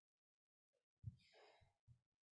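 A short sigh-like breath into a handheld microphone about a second in, with a low bump at its start.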